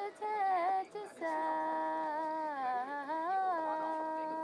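A woman's voice singing slow, drawn-out notes: a short falling phrase, a brief break about a second in, then one long held note that dips slowly in pitch and rises back.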